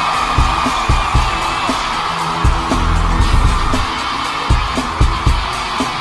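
Live rock band playing, led by an electric guitar over drum hits and a bass line, with an arena crowd cheering and screaming underneath.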